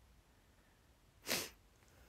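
A single short, sharp burst of breath from a woman, about a second in, over a quiet room.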